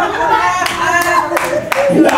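Congregation reacting with voices and scattered, irregular hand claps.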